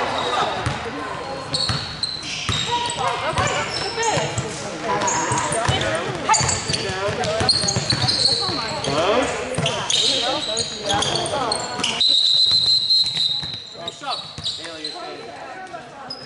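Basketball game sounds on a hardwood court: a ball bouncing, with players' voices and shouts echoing in a large hall. A high, steady squeal lasting about a second comes about three-quarters of the way through.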